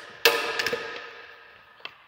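A plastic fog-light cover being pulled off the bumper: one sharp crack with a ringing tail that fades over about a second and a half, then a couple of light clicks.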